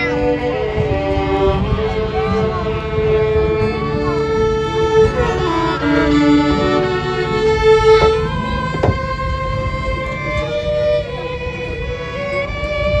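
Several fiddles playing a tune together with an acoustic guitar, mostly in long held notes.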